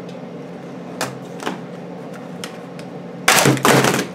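Plastic top cover of an HP Stream 11 laptop being pried off its base: a few faint clicks, then near the end a loud snapping burst in two parts as the tight clips let go and the cover comes free. It was pulled off by force, and some of its retaining clips broke loose.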